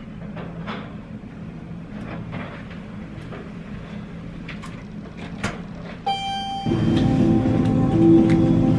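Low steady hum with scattered faint clicks and knocks while walking a suitcase to the elevator. About six seconds in comes a short, bright chime-like tone, then music comes in loudly.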